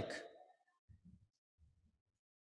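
Near silence: a man's voice trails off at the start, followed by two faint, brief low thuds about a second in and just before the end.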